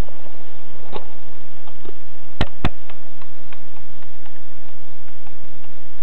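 Two sharp clicks about a quarter second apart, about two and a half seconds in, among a few faint ticks over a steady low hiss.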